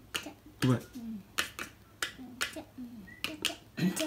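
Wooden xylophone bars struck with thin mallets: a quick, uneven run of light taps, about three or four a second, as a child plays a tune. A soft child's voice comes in once or twice between the strikes.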